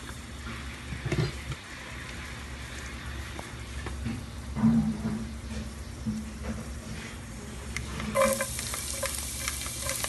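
Cooking oil heating quietly in a nonstick pot, with a few soft knocks. About eight seconds in, chopped garlic goes into the hot oil and sets off a steady crackling sizzle, the start of a sauté.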